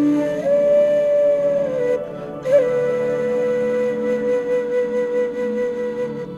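Slow background music: a melody of long held notes, the first sliding down slightly, then a brief dip about two seconds in before the next long note is held with a slight waver.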